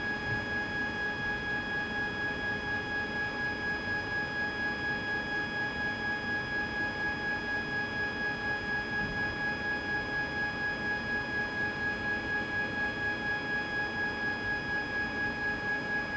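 Aspiration pump of a GenScript AmMag SA magnetic-bead purification instrument running as its nozzles draw the liquid out of 50 ml tubes: a steady whine of several pitches with a regular pulsing, a few beats a second.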